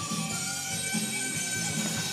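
Guitar-driven heavy metal music playing in the background from a record, steady and well below speaking level.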